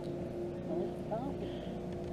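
Steady low hum of a boat motor, with faint voices underneath.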